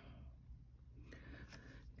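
Near silence: room tone, with faint handling noise from a clear acrylic stamp block being set down on card stock about a second in.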